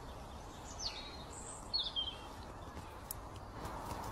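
A small bird chirping a few times, short high whistles that drop in pitch about one and two seconds in, over a steady hiss of outdoor background noise.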